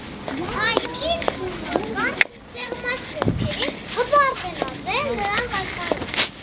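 High-pitched children's voices calling and chattering, with scattered sharp clicks and one loud click about two seconds in.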